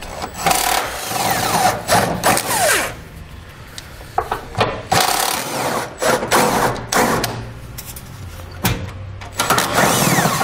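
Cordless impact wrench with an 18 mm socket on a long extension, hammering out the driver's-side frame-rail bolts in several bursts with short pauses between.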